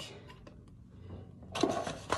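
Faint room tone, then about one and a half seconds in a brief rustle and knock as a foil tea pouch is slid aside and a plastic tea infuser is set down on the counter.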